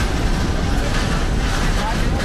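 Loud, steady low rumble of ambient noise in an aircraft carrier's hangar bay, with indistinct voices of people working in it.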